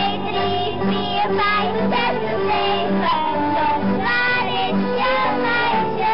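Children singing a Dutch folk song over a steady instrumental accompaniment.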